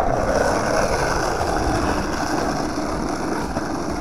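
Steady grainy rumble of wheels rolling over pavement while the camera travels along with them.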